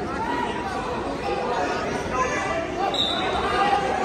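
Overlapping voices of spectators and coaches talking and calling out in a large gymnasium, echoing in the hall.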